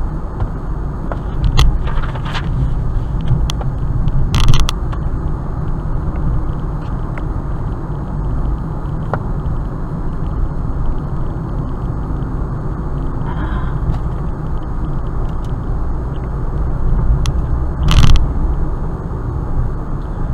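A car's road noise heard from inside the cabin while driving at about 40 mph: a steady low rumble of tyres and engine. Short sharp rattles or thumps cut through it a few times, the loudest about four seconds in and near the end.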